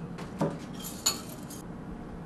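A metal spoon clinking: two sharp knocks about half a second and a second in, the second the louder, with a short run of light clinks around it.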